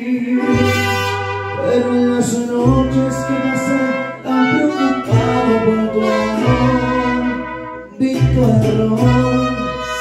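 Mariachi band playing an instrumental passage: trumpets and violins carry the melody over deep, held bass notes.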